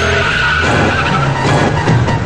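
SUV tyres screeching for about a second, with engine noise underneath, over dramatic background film music.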